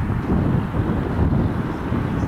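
Wind buffeting the camera microphone: a loud, uneven low rumble that rises and falls in gusts.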